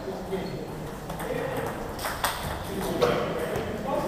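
Table tennis balls clicking off rubber paddles and table tops in irregular rallies at several tables at once, with voices murmuring in the background.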